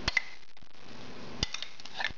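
A metal spoon clinking against a glass bowl as yogurt marinade is scraped out onto chicken. There are two sharp clinks right at the start and a few more about a second and a half in.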